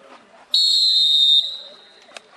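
Referee's whistle: a single long blast starting about half a second in, holding for just under a second and then tailing off.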